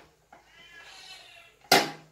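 A faint, high, mewing call lasting about a second, then a short, sharp crackle of a plastic bottle being handled near the end, the loudest sound.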